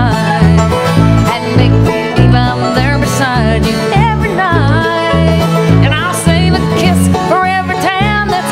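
Bluegrass band playing, with banjo and guitar over a steady bass line and a melody on top that slides between notes.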